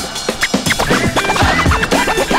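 Turntable scratching over music: a record pushed back and forth under the needle, giving quick rising and falling sweeps in pitch, several a second.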